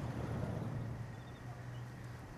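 A low, steady rumble under a faint hiss, swelling slightly in the first second.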